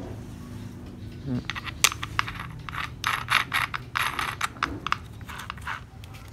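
Handling noise from a TOTAL angle grinder's parts: metal clicks and light clatter as its flange lock nut and spindle head are handled and the grinder body is moved about. A sharp click comes a couple of seconds in, followed by a busy run of irregular clicks.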